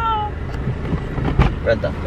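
A woman's high-pitched held squeal of excitement ends just after the start. It is followed by low rumbling and a few clicks and knocks from the camera being handled, with one louder knock near the middle.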